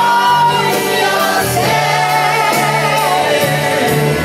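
A live band with a large group of voices singing together, recorded from within the audience in a hall.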